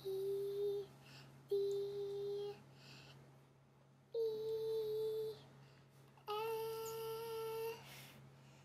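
A young girl singing the alphabet slowly: four long held notes with pauses between, the last two a little higher and the last one longest.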